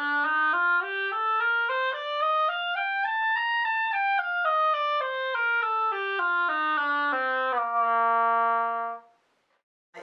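Selmer 1492B plastic student oboe played as a scale, stepping up two octaves from low B-flat and back down, ending on a held low B-flat that stops about nine seconds in. The instrument has no low B-flat key, so that low note is reached by covering the bell with the knees, and it has a brassy, trombone-like tone.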